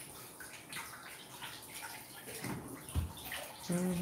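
Kitchen tap running into a sink while dishes are washed by hand, water splashing steadily, with a brief knock about three seconds in.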